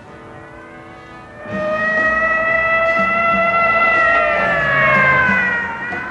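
Dramatic background score: quiet at first, then from about a second and a half in a loud held high tone that swells and slowly sinks in pitch, over a low line moving in steps.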